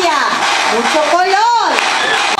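A high, drawn-out vocal wail from a clown, sliding up and down in pitch in long arches.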